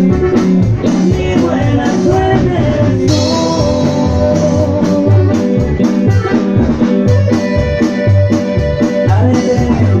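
Live band playing with an electronic keyboard and a drum kit over a steady pulsing bass beat; from about three seconds in the keyboard holds long sustained notes.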